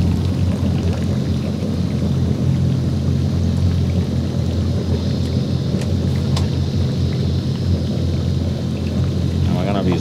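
Twin engines of a Yamaha 242 Limited jet boat idling in gear, a steady low drone, with a rushing noise of wind and water over it as the boat manoeuvres at idle speed.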